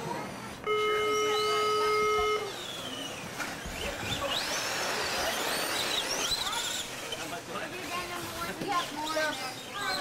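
A steady electronic buzzer tone sounds once, for nearly two seconds, about a second in. After it, RC cars race with their motors whining high, rising and falling in pitch as they speed up and slow down.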